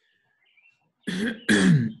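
A man clears his throat about a second in, in two short rasps, the second falling in pitch.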